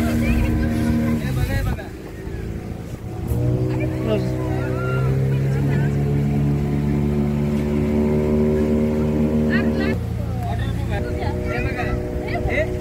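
Motorboat engine running steadily; it drops back and quietens about a second and a half in, then picks up again about three seconds in and holds a steady, lower hum, shifting once more near ten seconds.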